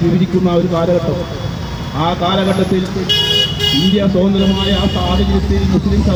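A vehicle horn sounds once for about a second, about three seconds in, over a man's amplified speech; a low traffic rumble follows near the end.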